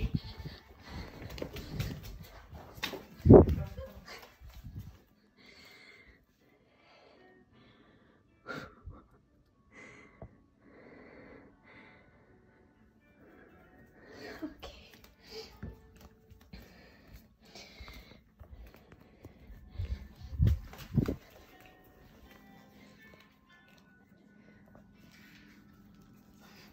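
A person breathing hard and panting from running around. There is one loud thump a few seconds in and two more close together about three-quarters of the way through, from footsteps or handling of the phone.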